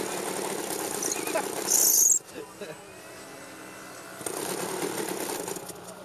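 Small methanol-fuelled glow engine of an RC model plane running at idle with the glow-plug igniter still attached. A brief loud hiss comes about two seconds in, after which the engine sound drops quieter for about two seconds before coming back up.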